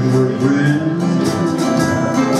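Acoustic guitar strummed in a steady rhythm over held chords: the instrumental opening of a live song performance, before any singing.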